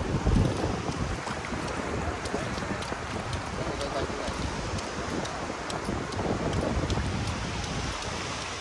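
Wind buffeting the microphone, strongest in a gust just after the start, over a steady hiss of wind and shallow seawater with scattered light ticks.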